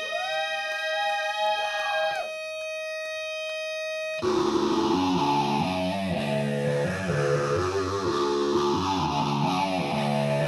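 Live rock band: effects-heavy sliding tones over a held steady note, then the held note alone. About four seconds in, the full band comes in suddenly and loudly, led by distorted electric guitar.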